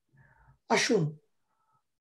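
A man's single short vocal burst with a sharp onset and falling pitch, just over a second in, after a faint breathy intake.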